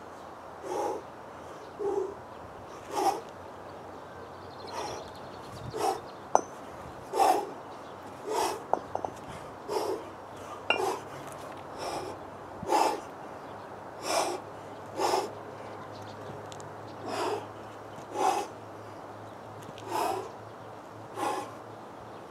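A man's short, forceful breaths out, about one every second or so, in rhythm with his reps of a two-kettlebell complex: hard breathing under heavy load late in a long set.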